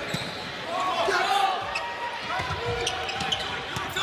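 Volleyball rally in a large hall: steady crowd noise with scattered voices, and a few sharp hits of the ball in the second half.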